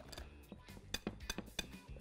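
Wire whisk beating muffin batter in a glass bowl, with a handful of irregular light clinks as the wires strike the glass, over faint background music.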